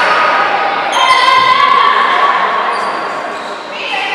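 Basketball game sounds in a sports hall: a basketball bouncing on the hardwood court amid players' and spectators' calling voices.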